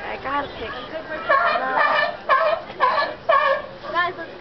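Sea lion barking: a run of loud, honking barks about twice a second.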